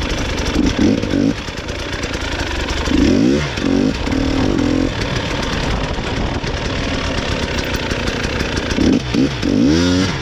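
A 300 cc two-stroke enduro motorcycle ridden along a trail, its engine revving up and falling back several times, about a second in, around three seconds and near the end, and running steadily in between.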